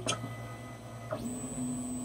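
Monoprice Maker Ultimate 3D printer's stepper motors whining as the printer moves to the next bed-leveling point. A short chirp comes at the start; about a second in, the whine rises steeply in pitch as the motion speeds up, then holds steady, over a constant low hum.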